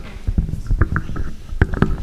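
Handling noise on the stage microphones: irregular knocks and thumps with low rumbles and rustling.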